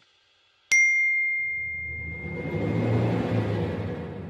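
A single bright ding under a second in, its clear tone ringing on and slowly fading, followed by a low swell of background music.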